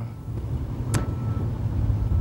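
Low, steady rumble of street traffic in the background, with one sharp click about a second in.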